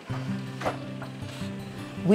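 Wooden loom being worked, its frame and beater clacking and rattling with a couple of sharp knocks, under soft background music.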